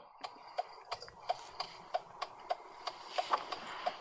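Steady ticking, about three ticks a second, over a faint hum on an open call-in phone line while a caller is being connected.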